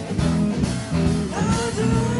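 A live blues-rock band playing, with electric guitar over bass, drums and keyboards.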